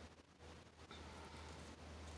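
Near silence: room tone with a faint, steady low hum.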